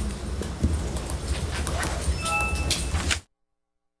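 Room noise of a council chamber as people stir after a vote: shuffling, rustling and light knocks, with a brief faint tone about two seconds in. The sound cuts off to dead silence a little after three seconds.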